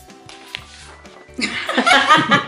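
Soft background music, then loud laughter breaking out about one and a half seconds in.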